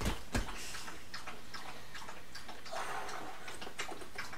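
Two soft thumps near the start, then faint, irregular ticking and clicking over a low room hiss.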